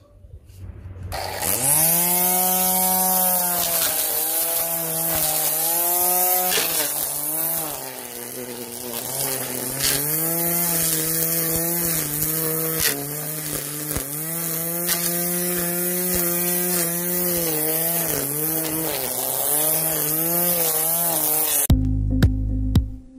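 Corded electric string trimmer starting up about a second in, its motor rising to a steady whine, then cutting grass, the pitch dipping again and again as the line bites into the grass and picking back up; it cuts off just before the end.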